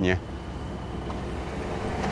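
Street traffic noise: a vehicle's low engine rumble growing slowly louder as it approaches.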